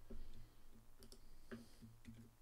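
A few scattered, quiet clicks of computer keyboard keys being pressed.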